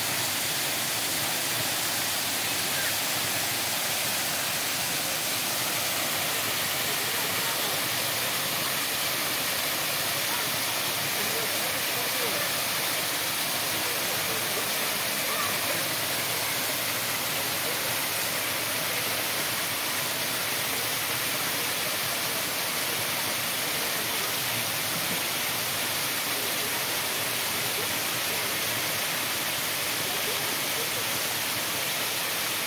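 Small waterfall pouring over a stone ledge into a shallow pool: a steady, unbroken rush of splashing water.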